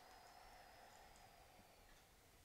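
A Koshi wind chime sounding faintly, one ringing tone that starts at once and fades away over about two seconds.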